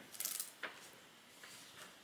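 Pages of a thick hardcover book being leafed through by hand: a short papery rustle, then a light tap just after half a second, followed by only faint handling.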